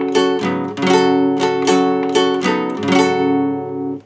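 Acoustic guitar with a capo on the fourth fret strummed with a pick in a down, down, up, up, down pattern, a steady run of about ten ringing chord strums that breaks off at the end.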